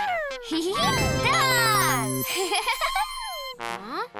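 Playful children's-cartoon music and sound effects: sliding pitch glides down and up, with a tinkling, sparkling chime cascade about a second in over a few held tones.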